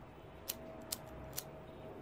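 Three sharp clicks about half a second apart: the flint wheel of a disposable lighter being flicked to light a cigarette.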